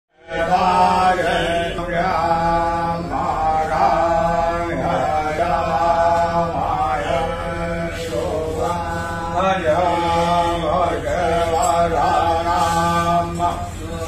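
A voice chanting a Sanskrit hymn in melodic phrases, each a second or two long, over a steady low drone.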